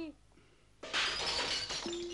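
A sudden crash of breaking glass a little under a second in, the shards ringing and rattling briefly as it fades over about a second.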